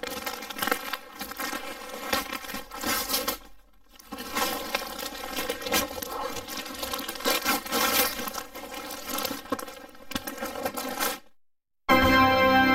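Gift-wrapping paper being torn and crumpled as a present is unwrapped. It comes in two long crackly stretches with a short pause about three and a half seconds in, and stops about a second before the end.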